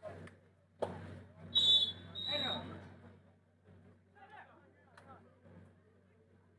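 Two short blasts of a referee's whistle, under a man's voice.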